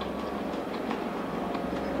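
A person chewing a mouthful of noodles and cabbage with the mouth closed: soft, faint wet mouth clicks over a steady background hum.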